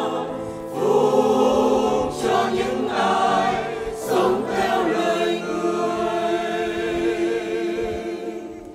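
Mixed church choir singing a Vietnamese hymn in harmony, holding long chords, with new phrases entering about a second, two seconds and four seconds in.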